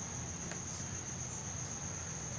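A steady, unbroken high-pitched whine over faint low room hum.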